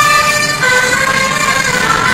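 Provençal tambourinaires playing galoubet pipes and tambourin drums: a high pipe melody of held notes that steps up about halfway through and back down near the end, over the drums.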